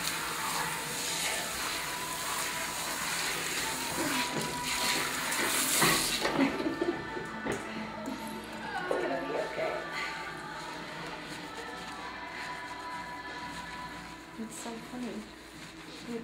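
Water spraying from a salon shampoo-bowl hand sprayer onto hair and into the basin, shut off abruptly about six seconds in. Afterwards come softer sounds of hands working shampoo into the hair, under background music.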